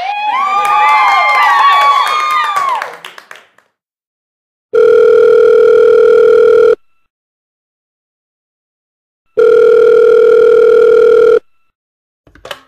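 A cluster of overlapping swooping electronic tones fades out over the first three seconds. Then comes a telephone ringback tone: two buzzy rings of about two seconds each, with a silent gap between them.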